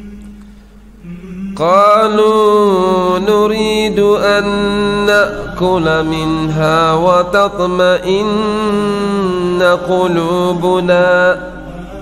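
A man's voice chanting a Quran verse in Arabic in the melodic tilawah style, with long drawn-out notes that bend up and down. It starts about a second and a half in and breaks off shortly before the end.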